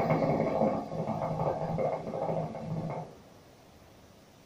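Hookah water bubbling in the glass base as a draw is taken through the hose. It is a steady gurgle that stops about three seconds in.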